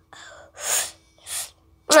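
Three breathy huffs of a child's breath, with no voice in them, the middle one loudest.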